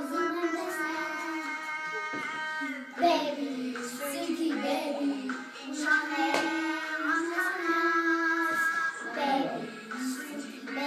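Young children singing a song, holding long notes with short breaks between phrases.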